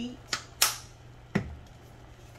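A light click, a louder sharp snap about half a second in, then a duller knock: kitchen items being handled at the stove during cooking.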